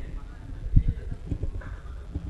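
A string of irregular soft knocks and thumps over a low hum, the strongest about three-quarters of a second in.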